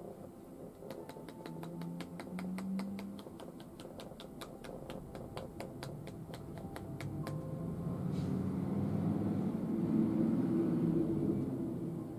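Rapid, evenly spaced tapping of a massage therapist's palms-together hands striking the client's head through a towel, a percussion massage stroke, which stops about seven seconds in. A soft low rustle follows and swells as the hands press and hold the head through the towel.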